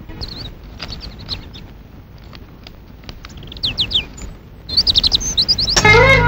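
Small birds chirping: short, high, quick down-sliding calls, scattered at first and coming thicker and louder in the second half. Music begins right at the end.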